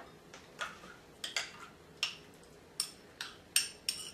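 A metal spoon clinking against the inside of a small drinking glass while chia seeds are stirred into water to soak. There are about nine light, irregular clinks, each with a short ring.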